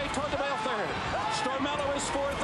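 A man's voice calling a horse race: the race announcer's continuous, fast commentary.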